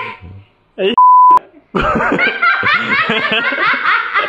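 A loud, steady beep about a second in, a censor bleep over a spoken word, then a woman laughing hard and without a break for the rest.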